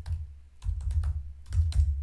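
Typing on a computer keyboard: a quick, uneven run of keystrokes, each with a dull low thump.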